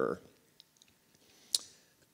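A single sharp click about one and a half seconds in, dying away quickly, in a pause between spoken sentences in a small room.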